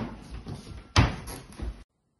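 Two loud thumps about a second apart in a room, each followed by smaller knocks, then the sound cuts off abruptly.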